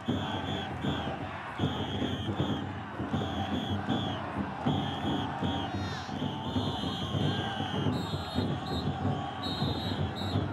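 Taiko-dai festival drum floats being held aloft, with the floats' drums beating and a crowd of bearers and onlookers shouting and cheering. Short high tones recur throughout.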